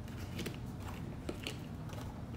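Tarot cards being drawn from a deck and laid down: a few light, crisp card clicks and snaps over a low steady hum.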